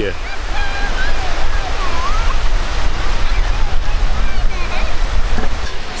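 Wind buffeting the microphone as a steady low rumble, over small waves breaking and washing at the water's edge.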